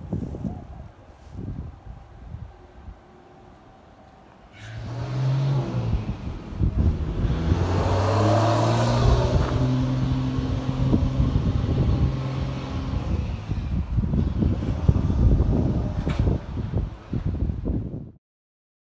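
A motor vehicle engine comes in about four seconds in, with a steady low hum, grows loudest near the middle and fades, while wind buffets the microphone throughout.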